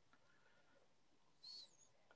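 Near silence, broken once about one and a half seconds in by a brief, faint, high chirp.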